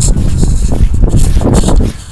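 Wind buffeting the microphone: a loud, irregular low rumble that rises and falls in gusts.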